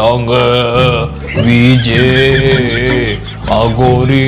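A man's voice chanting in the manner of a devotional mantra, holding long notes that waver and bend, with brief breaks between phrases, over a steady low hum.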